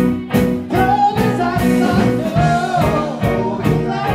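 Live rock band playing: electric guitar, bass and drums with a steady beat, and a male voice singing a held, gliding melody line from about a second in.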